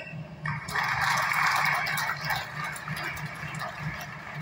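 Audience applauding. It swells about half a second in and thins out toward the end.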